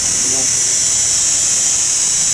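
A steady high-pitched hiss, the loudest sound throughout, with a brief spoken word just after the start.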